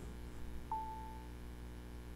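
A single short electronic beep from an Alexa tablet, one steady tone about half a second long a little under a second in, while Alexa takes in the spoken question. A faint low hum runs underneath.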